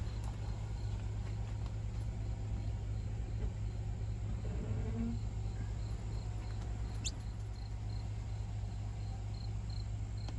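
An insect chirping steadily: a thin, high pulsing note about twice a second over a steady low rumble. A single short falling whistle sounds about seven seconds in.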